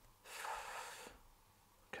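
A person's short, breathy exhale that fades out about a second in.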